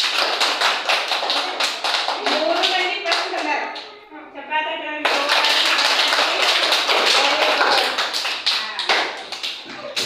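A group of schoolchildren clapping in two rounds of applause, each about four seconds long with a short break between them, with voices over the clapping.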